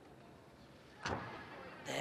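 A gymnast's feet coming down on a balance beam: one sudden thud about a second in, tailing off in the hall's echo, over faint steady arena background.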